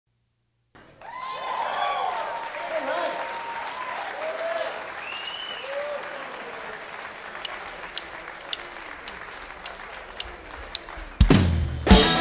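Audience applauding, cheering and whistling, dying down over several seconds. Then sharp clicks about two a second, a drummer's stick count-in, and the full band comes in loud with a rock-blues horn band's opening about a second before the end.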